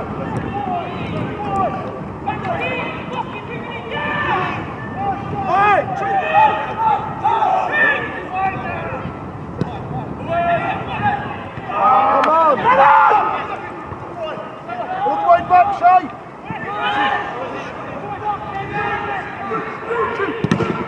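Footballers' shouts and calls during live play, raised voices coming and going throughout, loudest around two-thirds of the way through.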